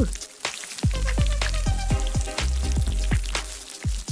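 Background music with a quick beat of short, falling-pitch plucked notes, about four a second, over a low bass. Under it, the faint sizzle of pancake batter cooking on a hot electric griddle.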